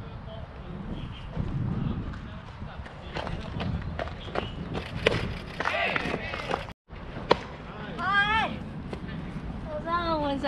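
Wind buffeting the microphone, with distant shouts and calls from players across a baseball field and scattered sharp clicks. One loud click comes about seven seconds in, just after the sound cuts out for a moment.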